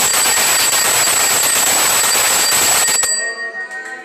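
Temple aarti bells and percussion clanging in a dense, continuous din with rapid uneven beats and a steady high ringing over it. It cuts off abruptly about three seconds in, leaving faint voices.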